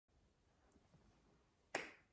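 Near silence, then a single sharp click about three-quarters of the way in that dies away quickly.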